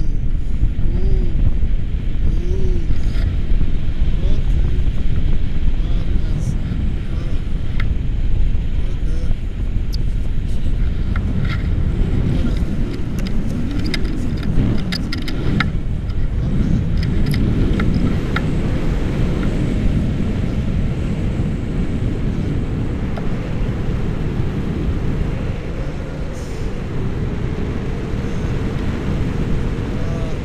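Wind buffeting the microphone of a camera held on a stick during a tandem paraglider flight: a loud, steady low rumble throughout.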